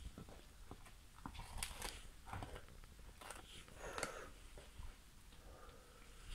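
Large dog gnawing on a frozen raw chicken carcass: faint, irregular crunches and clicks of teeth on frozen meat and bone.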